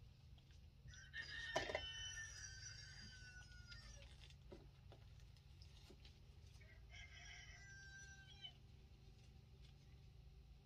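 A rooster crowing faintly twice, a long crow and then a shorter one, with a sharp click near the start of the first. A low steady hum runs underneath.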